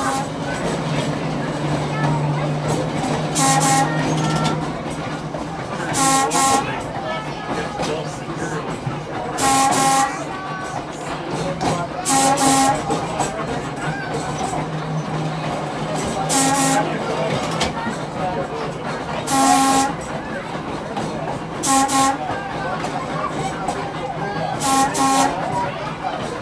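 An air horn sounds a string of short blasts, some single and some in pairs, spread over the whole stretch. Underneath is the steady running noise and hum of a 1926 Brill interurban trolley car rolling on its rails.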